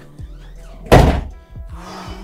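A door slammed shut about a second in: one heavy thunk over steady background music.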